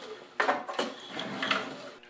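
Recoil starter of a 5 hp Tecumseh snowblower engine being pulled over by hand a couple of times. The rope whirs as the engine turns over with weak compression, which is put down to air probably leaking past the exhaust valve.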